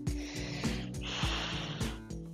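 Background music with a steady beat, with a woman breathing out hard with effort as she strains against a resistance band. The long breath out grows stronger about halfway through.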